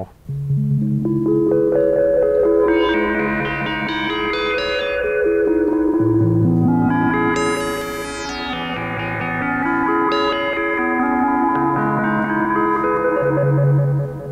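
Moog Matriarch analog synthesizer playing held chords that change every couple of seconds, while a control-voltage foot pedal sweeps its filter cutoff. The tone opens from dark to bright, peaking about eight seconds in, then closes down again.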